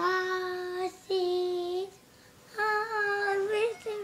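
A young boy singing unaccompanied: three long held notes of about a second each, the last a little higher and wavering at its end.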